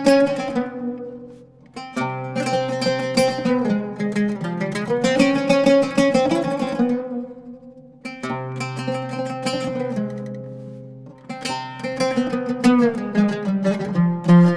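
Oud duet in the Iraqi style: two ouds playing quick plucked phrases. The sound twice dies away and a new phrase comes in, about two seconds in and again about eight seconds in.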